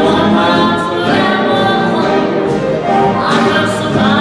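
Live dance band playing a 1930s/40s-style number with singing, at a steady loud level.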